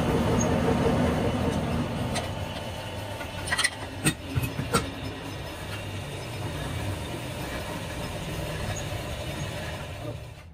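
Metal lathe running as a tailstock drill bores a centre hole into the end of a steel truck trailer axle: a steady machine drone with the drill cutting, easing after about two seconds into a lower steady hum. A few sharp knocks come between about two and five seconds in.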